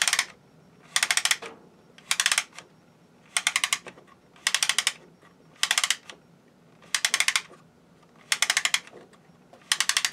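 Wooden crank of a Ugears laser-cut wooden truck model being turned by hand to wind its rubber-band motor. The mechanism gives short bursts of rapid clicking, about once a second.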